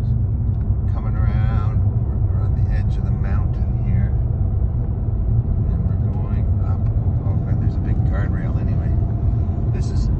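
Steady low rumble of engine and tyre noise heard inside a car's cabin while driving at road speed.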